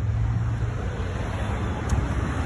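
A customized motorcycle's engine idling steadily with a low rumble.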